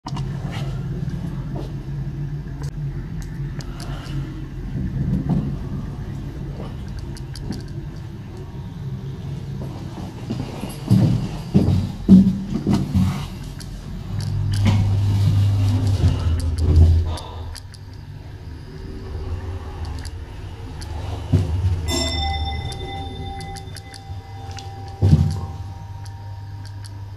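Sansei Technologies hydraulic passenger elevator in use: clicks and clunks of buttons and doors, then a low steady hum as the hydraulic drive lifts the car. About four seconds before the end, the arrival chime bell rings, several steady tones sounding together and fading out.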